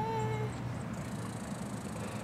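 A bird calling once, a single drawn-out, steady-pitched call that ends about half a second in.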